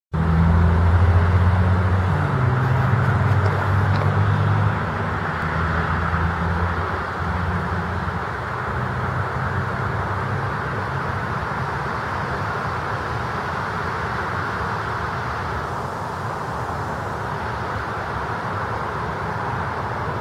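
Steady background traffic noise with a motor vehicle's low engine hum, loudest in the first several seconds and fading by about eight seconds in.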